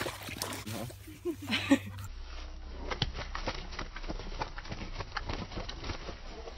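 A dog splashing about in shallow stream water: irregular splashes and sloshes, after brief voices in the first couple of seconds.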